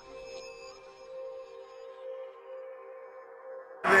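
Quiet background music of a few long held notes, a soft ambient drone that holds steady throughout.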